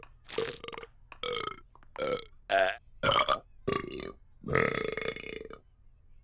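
A string of about nine long, pitched burps belched to a tune, like a sung anthem, with the last one the longest.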